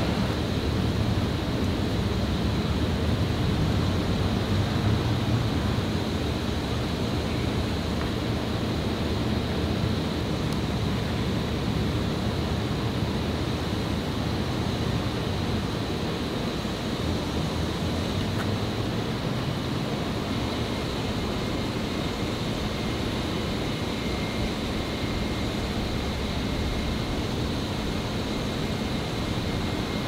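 Steady outdoor background noise, a low rumble with a hiss over it and no distinct events.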